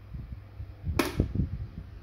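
A sharp click about a second in as a push-button switch on the base of a Silvercrest STV 30 A1 desk fan is pressed, followed by a few low knocks, over a steady low hum.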